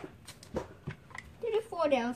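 Hands picking up and handling a cardboard card box, a few light taps and rustles, with a man's voice starting near the end.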